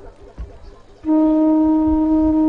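An accompanying musical instrument starts holding one steady, reedy note about a second in, after a brief lull.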